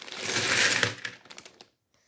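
Loose Lego bricks poured out of a plastic bag onto a Lego baseplate, clattering in a dense rattle for about a second and thinning out to a few last clicks.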